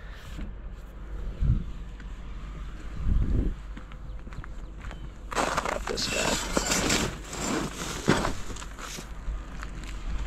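A metal wire grate being handled: a couple of dull knocks, then a few seconds of scraping and rattling as it is pulled out from under a plastic trash bag and lifted.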